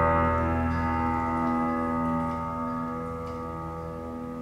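Recorded music played through Bowers & Wilkins PM1 loudspeakers in a room: a held chord rings on without new notes and fades steadily away.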